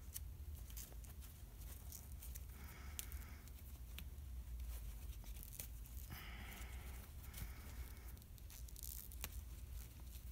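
A cloth snake bag being handled as its knotted neck is picked open: fabric rustling and rubbing in short patches, with scattered small clicks, over a steady low hum.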